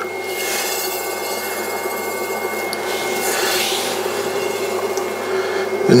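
Electric potter's wheel running with wet clay spinning under the potter's hands, a steady rubbing hiss over the low hum of the wheel. A thin high whine stops about halfway through.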